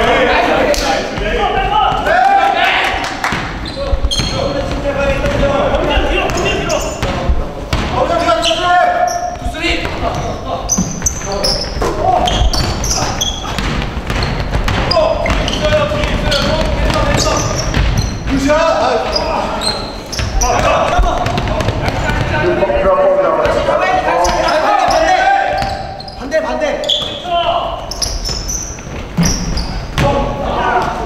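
Basketball game in a gym: players' voices calling out across the court over the thud of the ball being dribbled on the hardwood floor, all echoing in the hall.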